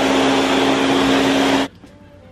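Countertop blender blending a smoothie. The motor runs loud and steady, then cuts off suddenly about a second and a half in.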